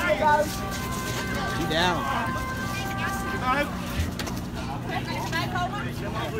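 Raised human voices shouting and crying out in short bursts, with a steady held tone under the first half.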